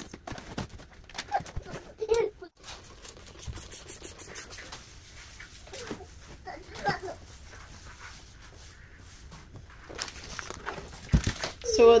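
Kitchen counter being wiped down and small items handled, with scattered light knocks and scrapes. A few brief voice sounds can be heard in the background.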